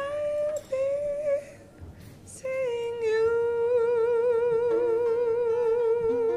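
A high voice hums the song's closing melody without words: two short phrases, then one long note held with vibrato from about two and a half seconds in. A few soft accompanying notes come in under it near the end.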